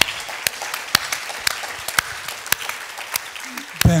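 Audience applauding, many hands clapping steadily until it stops near the end.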